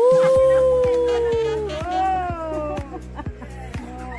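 A long howl starts suddenly, is held and sinks slowly in pitch for under two seconds, then a shorter howl rises and falls, over background music with a steady beat.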